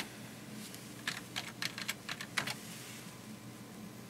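Computer keyboard keys being typed, about eight quick taps in the first two and a half seconds as a sudo password is entered and Enter pressed, then only a low steady hum.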